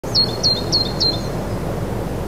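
A small bird chirping four times in quick, even succession over a steady low background hum of outdoor ambience.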